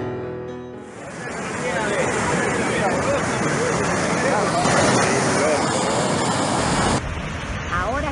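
The last notes of piano music fade out, then a muddy huaico (mud and debris flow) rushes loudly and steadily down a street, with people's voices over it. Near the end the sound changes abruptly to a quieter rush as a different recording begins.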